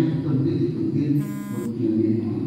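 A short buzzing tone, about half a second long, comes a little over a second in, over a steady low hum.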